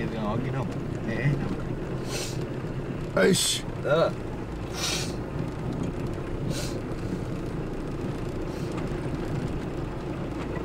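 Car driving slowly on a rough, muddy road, heard from inside the cabin: steady engine hum with tyre and road noise, and several short hissing bursts between about two and seven seconds in. Brief bits of a voice come through early on.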